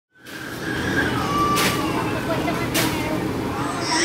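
Outdoor background ambience fading in at the start: a steady low rumble like a running engine or traffic, with faint indistinct voices and two brief high hisses a little over a second apart.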